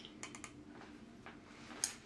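A few faint, light clicks from a small glass jar of salt being handled while salt is measured out, with a couple of ticks near the start and one near the end.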